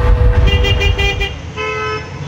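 Car horns honking over the low rumble of road traffic: three short toots in quick succession, then one longer, steady honk near the end.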